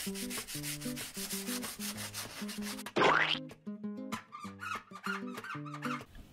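Fine sandpaper rubbing on a small 3D-printed resin cylinder in quick back-and-forth strokes, several a second, wet-sanding it toward transparency. A short rising whoosh about three seconds in, with background music underneath.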